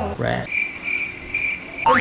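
Cricket chirping sound effect dropped into an edit: a steady, high, trilling chirp for about a second and a half while the music cuts out, ending in a short rising sweep.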